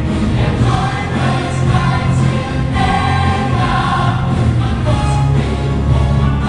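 Live musical-theatre singing: male soloists on microphones with the ensemble singing along as a choir, over a full orchestra, heard through the theatre's amplification.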